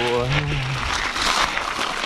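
Mountain bike tyres rolling over a loose gravel track with a steady crunching, rattling noise.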